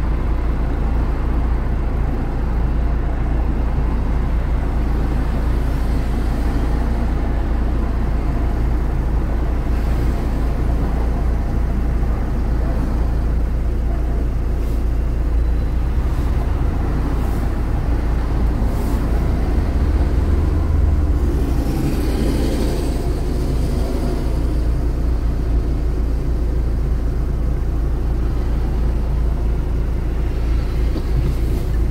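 Street traffic: a steady low rumble with cars driving past, one passing louder about two-thirds of the way through.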